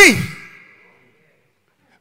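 The end of a man's shouted word through a microphone, falling in pitch and trailing off in the hall's echo within the first half second or so, then dead silence for over a second.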